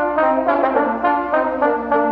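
Brass quartet of two trumpets and two trombones playing together in chords, the parts moving to new notes several times a second.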